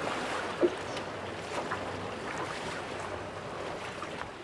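Sea and boat ambience: water washing along a sailing boat's hull with light wind on the microphone, steady throughout, with one brief knock about half a second in.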